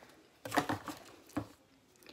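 A few short, soft rustles of cloth being handled and picked up close to the microphone.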